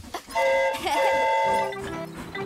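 Cartoon steam-train whistle sounding twice, a short toot and then a longer one. Near the end, light children's music starts up underneath.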